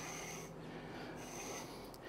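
Faint, soft rustling of long-line flax fibers being drawn through the metal tines of a hackle comb to comb out tangles.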